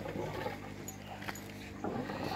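Electric water pump running with a steady low mains hum, feeding the aquaponics fish pond; a short voice-like sound comes in near the end.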